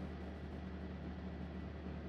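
Steady low hum with faint hiss in a gap between speakers; no speech and no sudden sounds.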